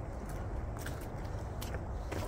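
Footsteps on a wooden boardwalk: a few light knocks, about one every second, over a steady low rumble on the phone's microphone.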